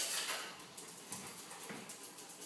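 A dog heard faintly, with light irregular rustles and ticks and no clear bark.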